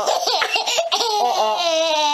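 Baby laughing, first in short choppy bursts, then in one long drawn-out laugh through the second half.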